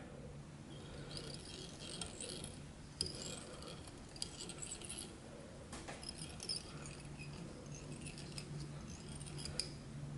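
Faint scattered clicks and light scratching from hands handling fine monofilament tying thread, a bobbin and scissors at a fly-tying vise, with a sharper click about three seconds in, over a faint low hum.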